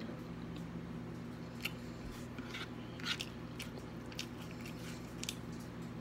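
A person chewing food close to the microphone, with irregular wet smacking and clicking mouth sounds. A steady low hum sits underneath.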